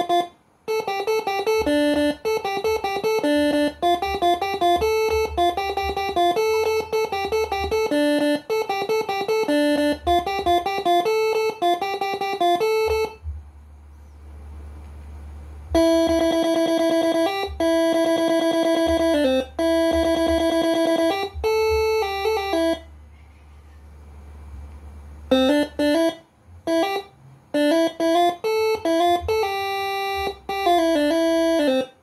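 Multi-trumpet electric "telolet basuri" air horn set driven by a Moreno MS5 horn module, playing programmed tunes note by note. A quick melody runs for about the first 13 seconds, then after a short pause come long held notes, and a quick melody starts again near the end.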